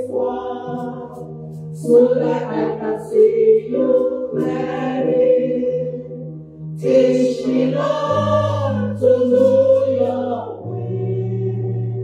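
A woman sings a gospel worship song into a microphone in sung phrases, over held low accompaniment notes that change pitch a few times.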